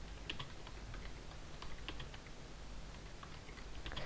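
Faint keystrokes on a computer keyboard as a line of text is typed, the clicks coming irregularly, a few a second.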